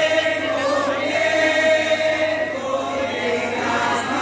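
Vocal singing for a Javanese lengger dance: long held notes that waver slightly in pitch, in two drawn-out phrases, the first about a second in and the second running on past the middle.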